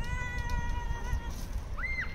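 A high, drawn-out mewing call held for about a second, then a short call that rises and falls near the end, over a low wind-like rumble.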